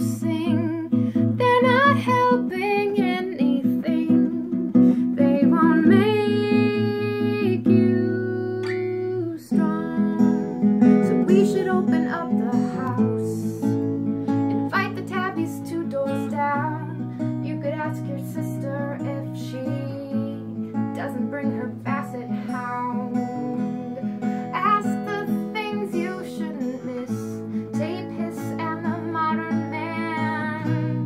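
Oval-soundhole gypsy jazz acoustic guitar strummed in a steady song accompaniment, with a woman singing over it in stretches.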